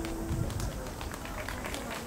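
The last acoustic guitar chord rings out and fades within the first half second, followed by scattered, irregular hand claps from a small audience.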